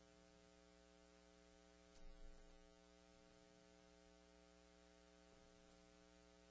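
Near silence with a steady electrical mains hum, with a brief soft low thump about two seconds in.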